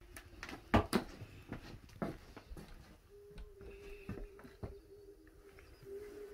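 Footsteps on old wooden floorboards: a run of hollow knocks about every half second, the loudest about a second in.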